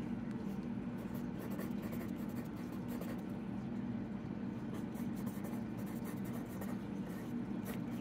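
A pen writing on a paper sticky note, stroke after stroke, over a steady low hum.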